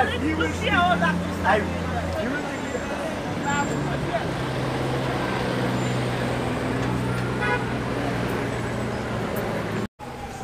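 Busy street: vehicle engines idling and running with a steady low hum, with passers-by talking in the first couple of seconds.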